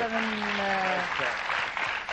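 Studio audience applauding. For about the first second a person's voice holds one long, slightly falling sound over the clapping.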